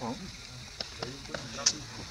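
A brief voice at the very start, then scattered sharp crackles and clicks, the sharpest near the end, over a steady high hiss.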